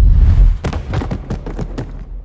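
Title-animation sound effect: a loud deep boom, then a quick run of sharp clacking knocks as the animated white blocks tumble and settle into place.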